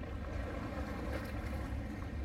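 Wind rumbling on the microphone over a steady hiss of outdoor ambience.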